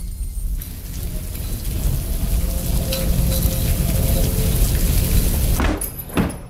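Steady rain-like hiss of fire sprinklers spraying water over a low rumble, breaking off near the end.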